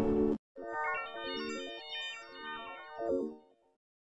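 Faint logo jingle of quick, bell-like electronic notes stepping up and down like a ringtone melody, ending about half a second before the end. It begins just after a louder sustained chord cuts off in the first half second.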